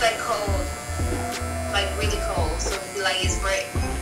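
Electric hair clippers buzzing as they cut hair, a low buzz that cuts in and out, under talk.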